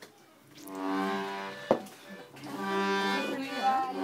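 Piano accordion playing two long held chords: the first starts just under a second in, the second about two and a half seconds in. A single sharp click falls near the end of the first chord.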